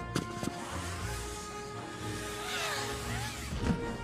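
Orchestral film-score music with held notes, over a low steady rumble; near the end, tones sweep up and back down in pitch.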